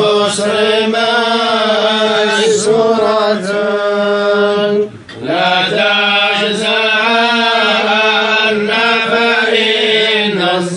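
Men's voices chanting religious verses in long, held, melismatic notes, with a brief breath pause about five seconds in.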